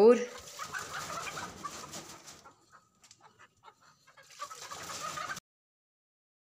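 Domestic hens clucking. The noisy chatter thins out in the middle, picks up again near the end, then cuts off abruptly.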